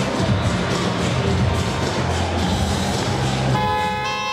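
Arena music with a steady heavy beat. Near the end an electronic buzzer starts, a steady multi-tone honk that marks the end of the break between periods.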